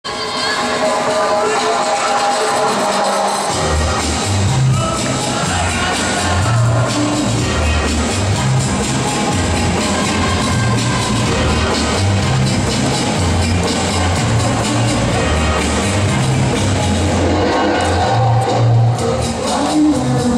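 Latin American dance music played for competing couples, with a steady bass beat coming in about three and a half seconds in; crowd noise from the hall underneath.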